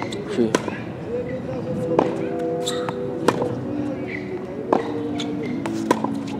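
Tennis ball struck by a racket five times, a sharp pop about every second and a half during groundstroke hitting on a hard court, over background music with sustained notes.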